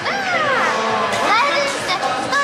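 Several young women laughing and chattering in high, excited voices.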